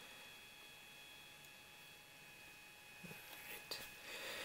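Near silence: room tone with a faint, steady high-pitched whine and a few faint clicks or breaths near the end.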